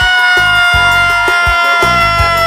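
A man's voice holding one long, high, steady note, sung or wailed, over background music with a steady beat.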